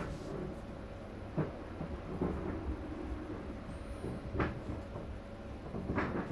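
Low background noise with a faint steady hum and a few soft, separate clicks and knocks.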